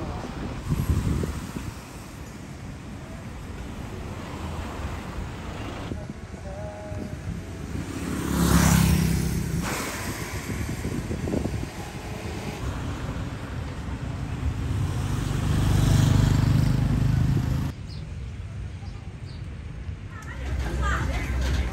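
Road traffic on a town street: cars driving past one at a time over a steady background of street noise, the loudest passes about eight and sixteen seconds in. The sound drops to a quieter background near the end.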